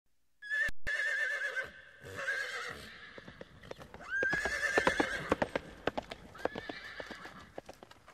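A horse whinnying several times: a long, wavering high call at the start, then shorter calls around four and six and a half seconds in. Hooves clop irregularly through the second half.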